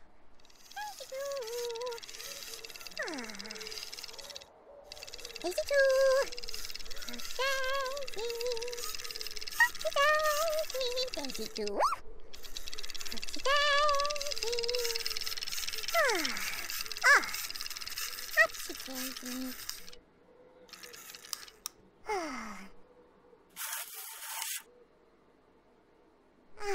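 Whimsical cartoon soundtrack effects: a string of wobbling, warbling pitched tones interleaved with several quick falling glides, then near quiet with a few short blips after about twenty seconds.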